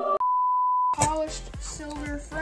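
A single steady electronic beep, one pure tone lasting under a second, cuts in over the end of the background music. After it, music with a beat starts about a second in.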